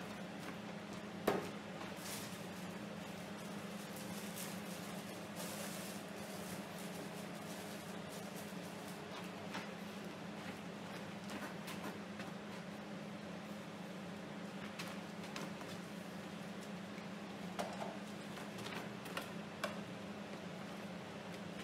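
Steady low hum of room tone with scattered light knocks and clicks of things being handled, a sharper knock about a second in and a brief rustle around five seconds in.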